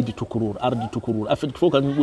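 A man speaking: speech only.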